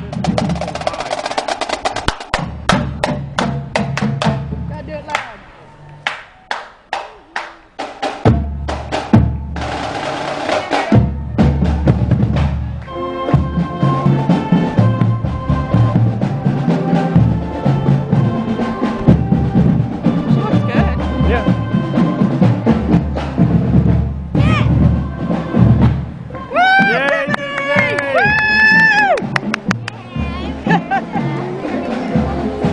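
High school marching band: drums play rapid strokes that thin to sparse, separate hits around the middle. From about 13 s the horns join with held notes over the drums, and near the end several notes bend up and down in pitch.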